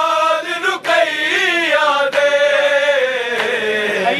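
A group of men chanting a noha, a Shia lament, in unison with their voices alone. The singing runs on without a break, and a long drawn-out note sinks slowly in pitch over the last two seconds.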